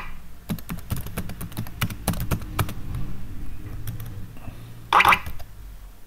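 Computer keyboard typing: irregular key clicks over a low steady hum, with one louder burst about five seconds in.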